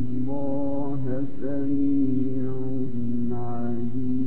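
A male Quran reciter chanting in melodic tajweed style, drawing out long held notes whose pitch rises and falls several times.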